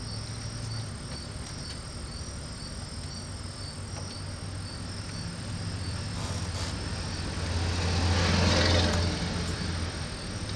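Insects chirping in a steady, even rhythm, with a vehicle passing that swells and fades about eight seconds in.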